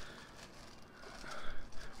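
Faint rustling and crinkling of tissue paper being unwrapped by hand, getting louder in the second half.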